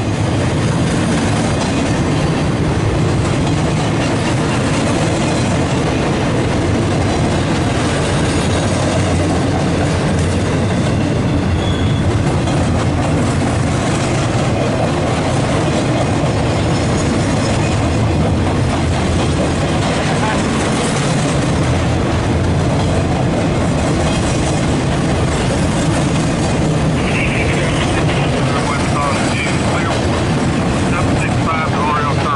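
Loaded double-stack freight cars rolling past at close range: a steady, unbroken noise of steel wheels running on the rails.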